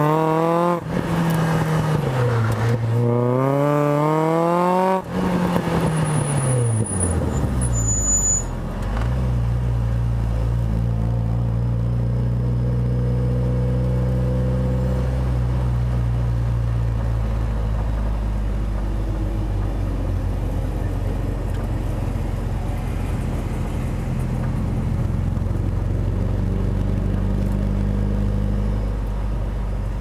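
1990 Mazda Miata's Rotrex-supercharged 1.8 litre four-cylinder, heard mostly as exhaust from a mic at the rear bumper. Its revs climb and drop several times, then fall away about eight seconds in as the car slows. It then runs low and steady, near idle, while rolling slowly.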